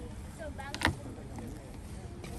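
Low chatter of a crowd's voices over a steady low rumble, broken by a single sharp knock a little under halfway through.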